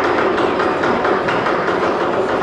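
Lion dance percussion: a large drum with clashing hand cymbals playing a rapid, steady beat.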